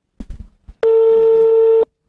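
A single steady telephone line tone, about a second long, at a mid pitch, that starts and stops abruptly: a call-progress signal from a phone call placed over the studio line.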